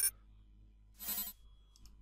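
Kahoot! game sound effects: an electronic ringing tone cuts off at the very start, then about a second in a brief whoosh lasting about a third of a second as the next question's intro plays. Otherwise only a faint hum.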